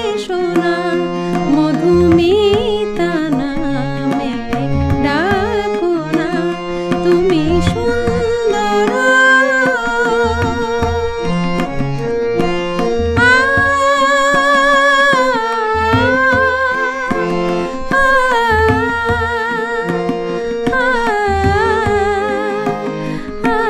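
A woman singing a Bengali film song to tabla accompaniment, her melody wavering with vibrato over a steady rhythm of tabla strokes.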